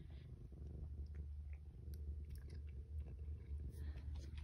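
A domestic cat purring softly, a low steady rumble, with a few faint soft ticks over it.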